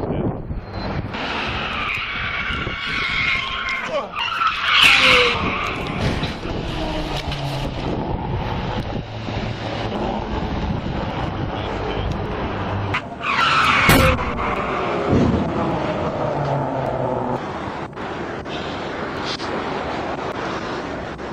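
Highway traffic noise, with a car's tyres skidding and squealing about five seconds in. A second skid about fourteen seconds in ends in a sharp crash as the car hits the police squad car.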